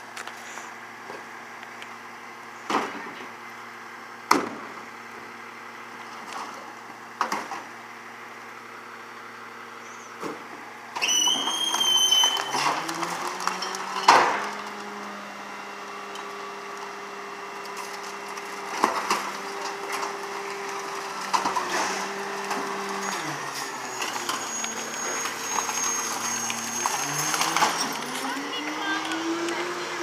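McNeilus M5 rear-loader garbage truck's diesel engine idling while bins are knocked against the hopper, with several sharp knocks. About eleven seconds in, the engine speeds up to drive the packer's hydraulics, with a brief high whine and a loud bang a few seconds later; it runs at the raised speed until about 23 seconds, drops back, and rises again near the end.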